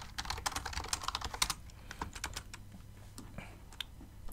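Typing on a computer keyboard: a quick run of keystrokes in the first second and a half, then a few scattered key presses.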